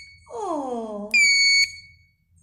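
Kugoo S1 electric scooter's electronic horn sounding one short, shrill beep about a second in, lasting about half a second.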